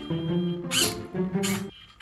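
Background music, with two short high hissing bursts in the second half as the robot's toy water gun fires. No water comes out: the pump has sucked in air and runs dry despite a full tank.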